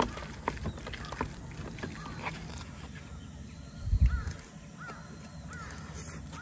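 Metal spoon clicking and scraping in a wooden bowl as kimchi and rice are stirred together, then a dull thump about four seconds in. After the thump a bird calls three times in short, evenly spaced notes that rise and fall.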